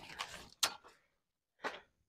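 Banana leaves and stalks rustling as they are pushed aside, with a sharp snap or crack just after half a second in and another short rustle near the end.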